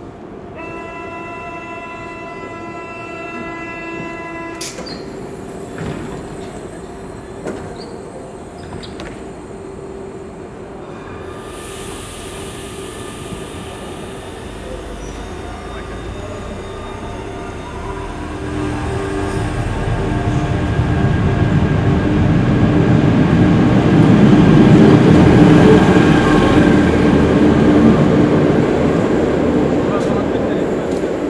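Recorded train sound played back over loudspeakers. It opens with a few seconds of steady, chord-like tones, then the train's noise builds, growing steadily louder and peaking near the end in a crescendo with a glide toward the high frequencies.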